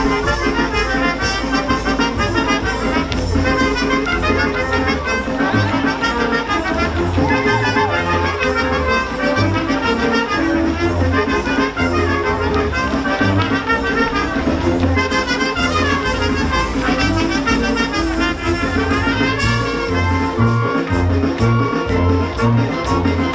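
A brass band playing a lively Oaxacan son, trumpets carrying the melody over a steady, rhythmic low bass pulse.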